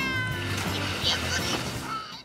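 Upbeat background music with a woman's high-pitched squeal that slides down in pitch over the first half second, and a short laugh near the end.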